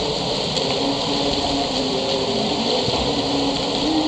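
Steady rush of splashing water in a swimming pool as a swimmer strokes through it.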